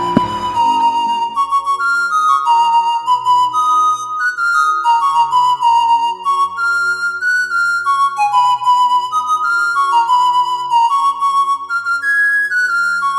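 A flute melody of held notes that climb and fall back in short phrases, over a soft low accompaniment.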